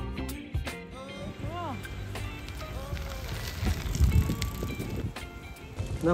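Wind rumbling on the microphone of a moving bicycle, under background music, with a few short rising-and-falling voice-like tones.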